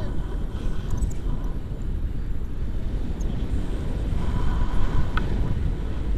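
Airflow buffeting the camera microphone during a tandem paraglider flight: a steady low rumble of wind noise.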